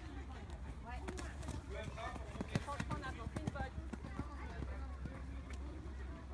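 Indistinct voices of people talking in the background, with a few scattered dull thuds and a steady low rumble underneath.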